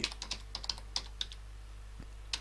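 Typing on a computer keyboard: a quick, uneven run of keystrokes that trails off after a little over a second, over a low steady hum.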